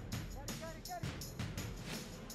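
Quiet background music with a steady beat, about three beats a second, and a faint voice calling briefly about half a second in.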